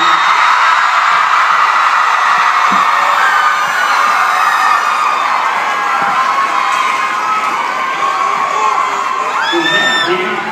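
A large audience cheering and screaming without a break, loud and steady, with high-pitched shrieks standing out above the roar: fans greeting performers coming onto the stage.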